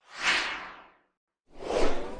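Two whoosh sound effects from an animated logo sting. The first swells and slides down in pitch, fading within a second. The second swells up about a second and a half later and is loudest near the end.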